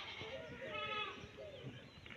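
A faint bleat from a farm animal, one call about half a second long starting just over half a second in.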